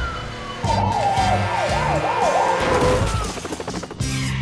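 Police car siren yelping in fast up-and-down sweeps, its pitch falling away near the end, over background music.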